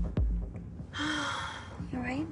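A person's breathy gasp about a second in, over low background music with a couple of dull thuds near the start.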